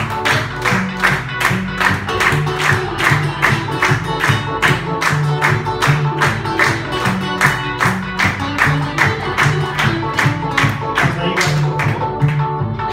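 Acoustic guitar played with a driving rhythm while the audience claps along in a steady, repeating pattern.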